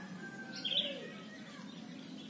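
A small bird chirping briefly about half a second in, over a faint steady background hum.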